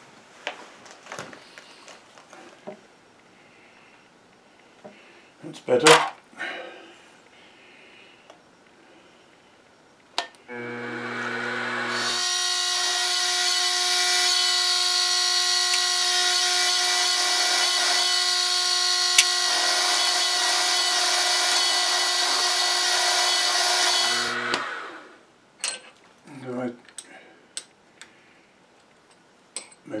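Milling machine spindle starting up, then a 17/64 in twist drill boring a cross hole through a round metal workpiece: a loud, steady cutting whine with grinding for about twelve seconds, then the spindle runs down. About two-thirds of the way through there is a sharp tick, where the drill catches on the bottom of the existing bore. A few light knocks from handling come before the cut, and clicks after it.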